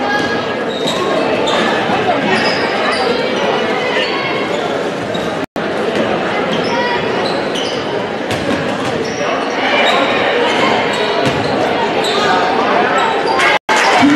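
Basketball game sound in a large gym: a steady murmur of crowd voices, a basketball dribbling on the hardwood floor, and short high squeaks of players' shoes on the court. The sound cuts out for an instant twice.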